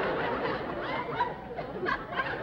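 Audience laughter: many people chuckling and laughing at once.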